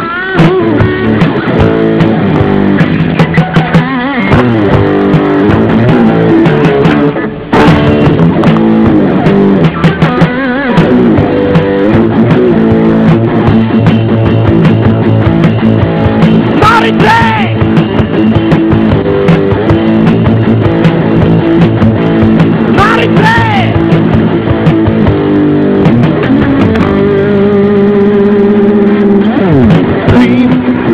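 Rock band playing: electric guitars, bass guitar and drum kit in a steady instrumental passage, with a brief drop in level about seven seconds in.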